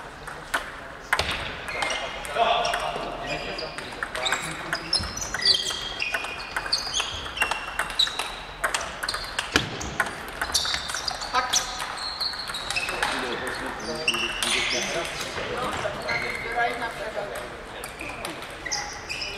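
Table tennis balls clicking off bats and tables, irregular hits from several tables at once, with voices talking in the hall.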